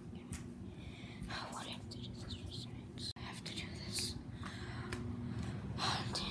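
A person whispering in short breathy bursts over a steady low hum, with a brief cut-out about three seconds in.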